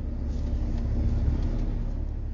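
Camper van engine running, heard from inside the cab as a steady low rumble with a faint steady hum above it.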